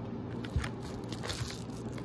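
Handling and rustling noise: a low thump about half a second in, then a run of scattered crackles and rustles, over a steady low hum.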